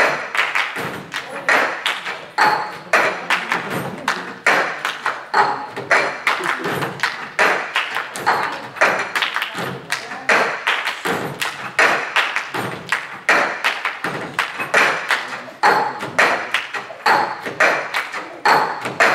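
Cup percussion: several people clapping their hands and knocking and tapping cups on tabletops in a fast, steady rhythm.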